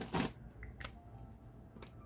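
Light handling sounds: one sharp click just after the start, then a few faint taps and soft rustles as a paper tracker sheet in a plastic sleeve and a felt-tip marker are handled on a tabletop.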